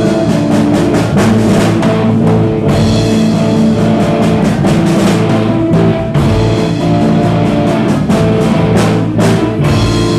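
Live rock band playing an instrumental passage: drum kit, electric guitar and bass guitar together, with no singing.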